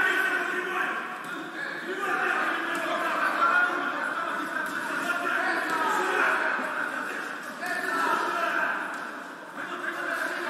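Voices talking and calling out continuously, with no clear words, easing briefly about nine seconds in.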